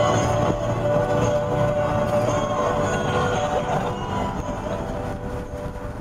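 Steady road and wind noise of a car driving at speed with a window open, with a continuous rumble.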